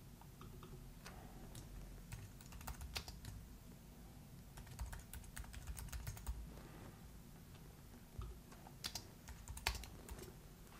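Faint typing on a computer keyboard: irregular, scattered keystrokes with short pauses between bursts.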